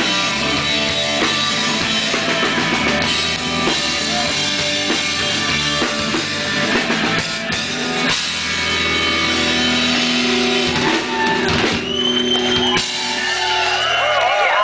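Live rock band playing an instrumental passage on acoustic guitar, electric guitar and drum kit. About two-thirds of the way through, the band settles on a final chord that rings on. Near the end the audience begins to whistle and cheer.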